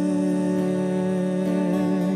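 Slow devotional hymn: a voice holds one long, steady note, with soft instrumental accompaniment, and the note ends near the close.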